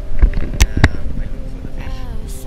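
Two sharp clicks about a quarter second apart, over a low rumble and steady background tones.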